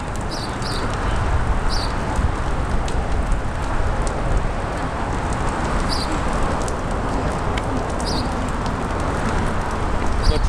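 Steady outdoor rumble and hiss, with a few short high chirps of small birds at scattered moments.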